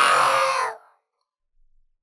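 A loud, breathy vocal noise from the narrator close on the microphone, most likely a deep breath or sigh between sentences. It lasts under a second, fading out about a second in.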